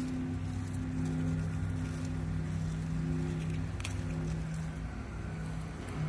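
A steady low mechanical hum from a running machine, with a faint click about four seconds in.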